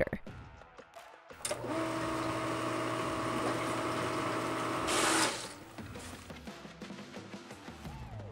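Little Giant VCMA-20 Pro condensate pump's electric motor started by its test run lever: a click about a second and a half in, then a steady whir with a hum for nearly four seconds. It gets briefly louder just before it cuts off.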